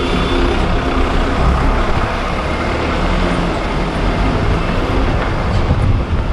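Engine and road noise heard from inside a vehicle driving along a rough dirt road: a steady, loud low rumble.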